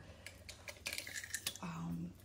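A few light, sharp clicks and taps spread over about a second and a half, as a tape measure is handled and pulled out.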